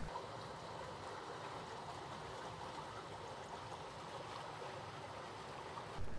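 Water flowing steadily over stonework in a small cascade, a low, even rush.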